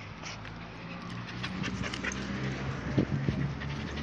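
A dog panting close by after running, with short irregular breaths and a sharper sound about three seconds in, over a steady low hum.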